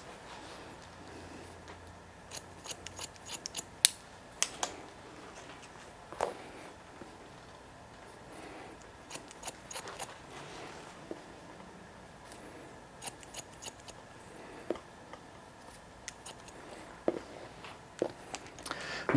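Haircutting shears snipping through wet hair, cutting a straight line: single snips and short runs of quick snips with quiet gaps between.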